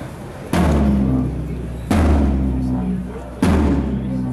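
Marching drum struck three times at a slow, even pace, each hit ringing on with a low tone that fades over about a second.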